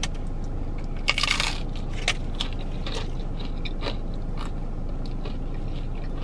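Biting into the crunchy hard shell of a Taco Bell Volcano Taco: one loud crunch about a second in, then scattered small crunches as it is chewed. A steady low hum runs beneath.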